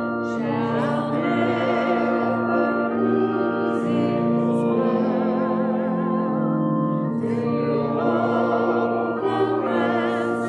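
A hymn sung with strong vibrato, led by a woman's voice, over sustained chords played on an electronic keyboard.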